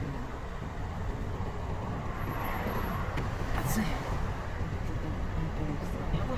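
Car road noise while driving: a steady low rumble of engine and tyres.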